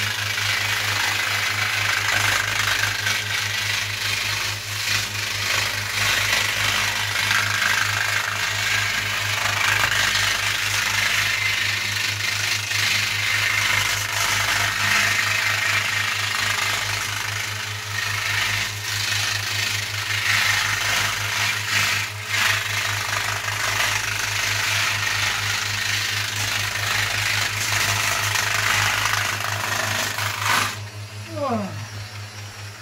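Angle grinder with a sanding disc running continuously, the disc rasping against cured spray-foam insulation on a ceiling as it is sanded smooth.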